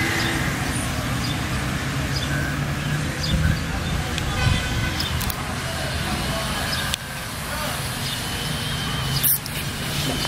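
Steady low rumble of a running engine, with a short sharp click about nine seconds in.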